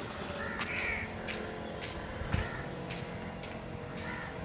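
Birds outdoors giving several short calls, with a single dull thump a little past the middle.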